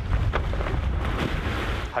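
Heavy wind rumble on the microphone over water splashing and churning beside a small boat at sea.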